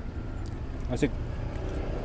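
Steady low rumble of outdoor street background noise, with one short spoken word about a second in.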